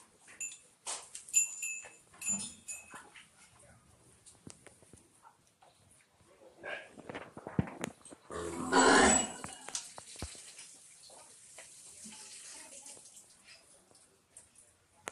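Gir cattle in a shed. One loud, noisy burst lasts about a second, just past the middle, and short high chirps come near the start.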